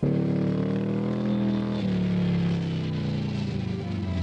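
Dune buggy's air-cooled Volkswagen flat-four engine running hard, its pitch sagging slowly and shifting about two seconds in.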